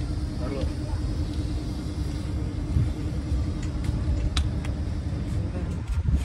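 Steady low rumble with a constant hum, and a few light metallic clicks of hand tools on a car's front shock absorber strut in the middle.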